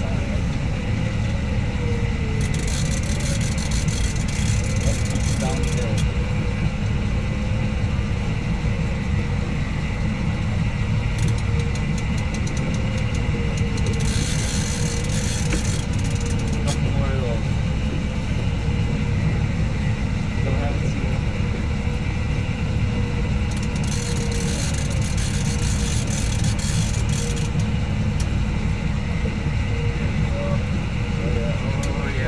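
Fishing boat's engine running steadily with a deep, even rumble, with several stretches of hissing a few seconds long over it.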